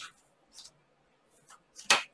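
Tarot cards being handled: a few faint card rustles, then a short, louder swish of a card near the end.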